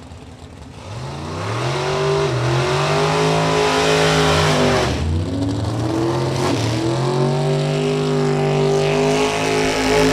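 Drag-race car engine at full throttle, its pitch climbing steadily, dropping briefly about five seconds in, then climbing again until near the end.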